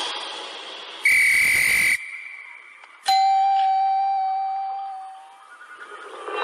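A sharp whistle blast, a single high steady tone held for about a second, like a referee's whistle in the show's soundtrack. About a second later comes a sudden strike that rings out as one bell-like ding, fading away over about two seconds.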